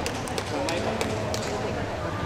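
Several people talking in an echoing sports hall, with a few short sharp knocks.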